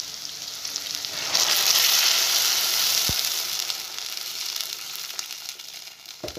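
Chopped vegetables sizzling in a hot stainless steel pot, stirred with a wooden spoon. About a second in the sizzling flares loud as liquid goes into the pot, then slowly dies down, with one short knock halfway through.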